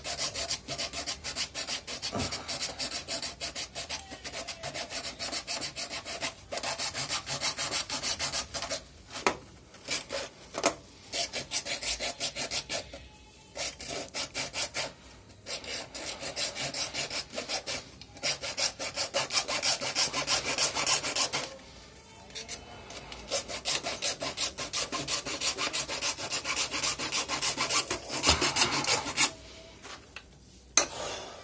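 A hand-held saw blade cutting through the plastic housing of an inline sediment filter, in rapid back-and-forth strokes. The sawing comes in several runs, with short pauses a little under halfway and again about three quarters of the way in.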